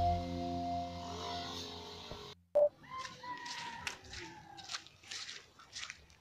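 Organ background music fades out over the first two seconds and cuts off abruptly. It is followed by quiet outdoor ambience with soft, irregular crunching steps on freshly cut grass and a few faint chirps.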